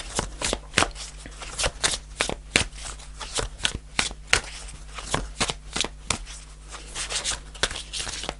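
A tarot deck being shuffled by hand: a continuous run of quick, irregular card flicks and clicks, several a second.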